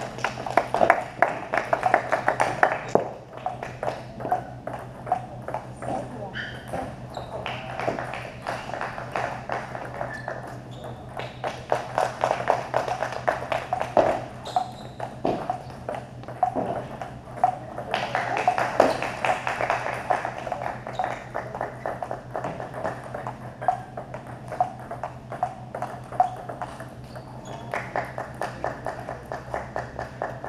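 Table tennis balls clicking against paddles and the table in continuous rallies, each hit a short hollow ping, with voices in the background and a steady low hum.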